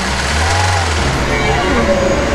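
Car engine running with a low, steady drone that eases off after about a second.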